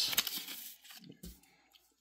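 A printed sheet of paper rustling as it is lifted and handled by hand: a brief crinkle at the start, then a few fainter rustles dying away within about a second.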